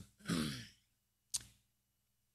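A man's breathy sigh, falling in pitch, followed about a second later by a single short click.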